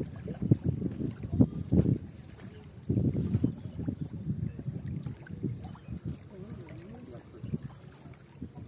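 Wind buffeting the microphone in irregular low rumbling gusts, strongest in the first half, over small waves lapping at the water's edge.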